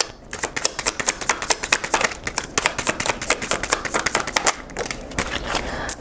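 A deck of tarot cards being shuffled overhand between the hands: a rapid, continuous patter of cards slapping and sliding against each other.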